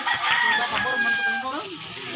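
A rooster crowing once, one long drawn-out call, over the voices of players and onlookers.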